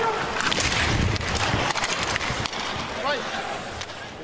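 Ice-level hockey game sound: skates scraping the ice and sticks clattering, with a heavy thud about a second in as a player is checked hard into the boards.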